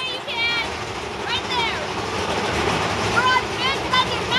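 High-pitched voices and squeals of riders over the steady rumble of the Big Thunder Mountain Railroad mine-train roller coaster. The rumble fills the middle, and the squeals come just after the start and again near the end.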